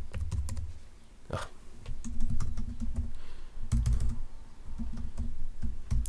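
Typing on a computer keyboard: irregular key clicks as a word is typed, mistyped and corrected with the backspace key.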